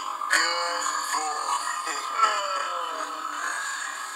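Cartoon soundtrack playing from a television speaker: music with short gliding pitched sounds, thin and without bass.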